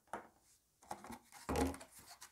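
Metal slotted spoon clicking and scraping against a plastic tub as cream is skimmed off set milk, a series of small knocks getting busier after the first second. A short burst of voice near the end.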